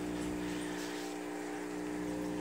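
Steady hum of running aquarium equipment, hang-on-back filters and an air pump feeding air stones, with a few low steady tones.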